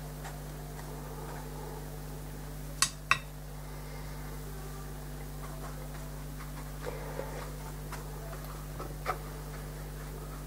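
Light clicks of painting tools knocking on hard surfaces at a watercolour work table: two sharp clicks about three seconds in and a few fainter taps later, over a steady low hum.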